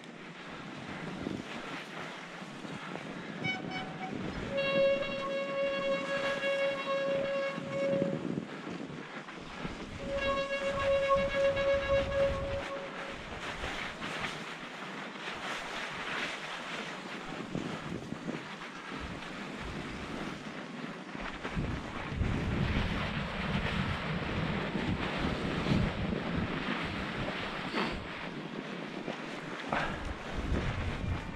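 Specialized Turbo Levo electric mountain bike rolling down a snowy trail, with a steady rush of wind on the microphone and rattle from the bike over the bumps. Twice, about five seconds in and again about ten seconds in, a steady high-pitched squeal from the bike holds for about three seconds. The ride grows rougher and rumblier in the second half.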